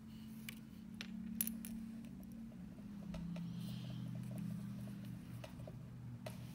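Small sharp clicks and ticks of nail-art tools and loose rhinestone crystals being handled, a few in the first two seconds and fainter ones later, over a low steady hum.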